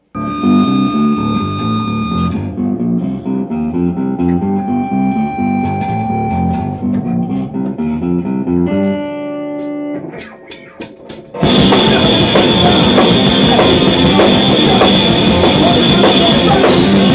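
Rock band jamming. A guitar plays a picked riff of clear single notes, then lets a chord ring, with a few sharp clicks in the lull. About eleven seconds in, the full band comes in much louder: guitar, bass and drum kit together.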